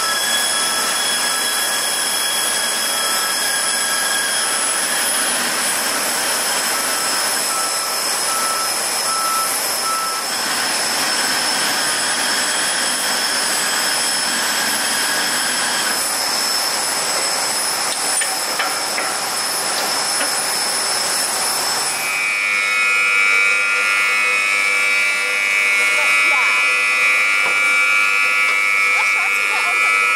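Airport apron noise: a steady high-pitched whine of aircraft turbines over a hiss, with a faint beep repeating about twice a second for the first ten seconds. About twenty-two seconds in, a louder whine of higher tones takes over.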